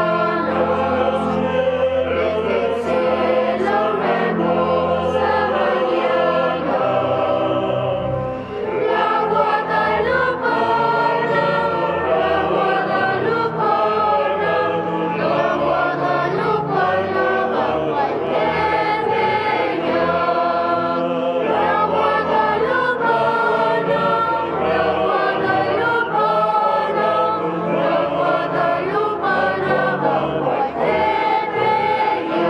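A choir singing a hymn, with a brief break between phrases about eight seconds in.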